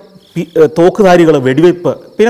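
A man speaking in Malayalam, with a short pause at the start, while a cricket trills faintly and steadily in the background.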